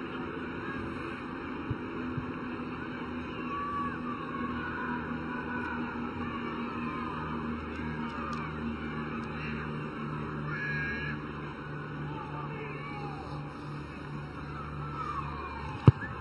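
Steady stadium crowd ambience, with scattered faint voices and whistles over a low hum. Near the end comes a single sharp thud: a boot striking the rugby ball for a long-range penalty kick at goal.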